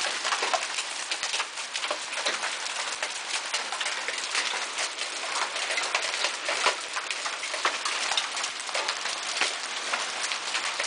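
Hailstones of large-marble to golf-ball size pelting the ground and lawn in a heavy hail storm: a dense, steady hiss thick with sharp clicks and knocks.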